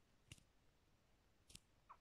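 Near silence with two faint clicks, a little over a second apart, and a smaller tick near the end: peeled garlic cloves dropping onto potato slices in a non-stick frying pan.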